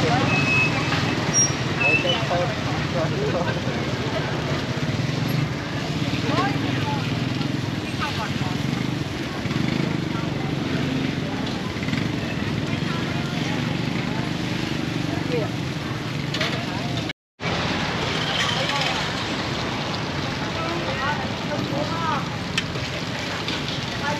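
Busy street ambience: traffic and motorbike engines running steadily, with people talking in the background. The sound drops out briefly about 17 seconds in.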